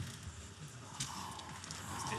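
Faint footsteps and shuffling of several people walking across a stage, with a brief rustle about a second in.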